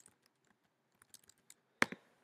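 Typing on a computer keyboard: a run of light, irregular key clicks, with one sharper, louder click near the end.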